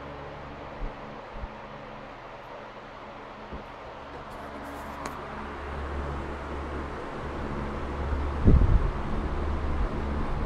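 Mid-1940s Westinghouse Power Aire 16-inch oscillating desk fan (model 16PA2) running on high: a steady motor hum under the rush of air from its Micarta blades. It grows louder from about six seconds in as the microphone comes close to the blades, with a brief low thump of air on the microphone about eight and a half seconds in.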